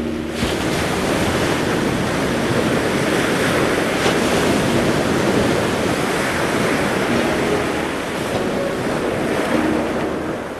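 Ocean waves and surf sound effect: a steady, loud rushing wash of sea water with wind, swelling a little midway.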